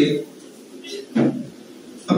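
A man speaking through a microphone in a pause of his talk: the end of a word at the start, then a short spoken sound a little over a second in, with low room noise between.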